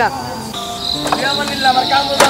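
A steady, high-pitched insect trill that starts about half a second in and holds on without a break.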